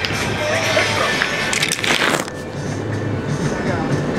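Rustling and knocking of a camcorder being handled, over the steady drone of a boat's engine, with a loud rustle about two seconds in.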